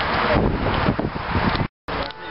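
Wind buffeting the camera microphone: a loud, gusty rumble and rustle. It drops out abruptly for an instant near the end.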